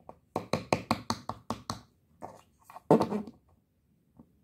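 Quick clip-clop of hoofbeats, about five knocks a second, breaking into a few scattered knocks and one louder, longer knock about three seconds in.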